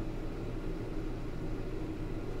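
Steady low hum with a light hiss: room tone, with no distinct event.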